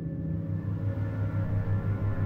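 Eerie background music: a low drone that pulses about three times a second under several held, ringing tones.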